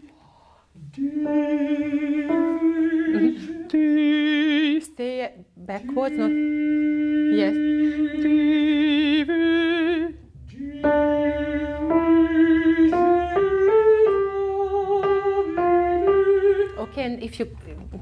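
Countertenor singing held, vibrato-rich notes in short phrases, with a line rising step by step in the second half. Single piano notes sound beneath the voice.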